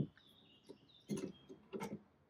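Quick-release bar clamps being handled and loosened on a wooden table base: a handful of short metallic clicks and rattles. Faint birdsong chirps in the background.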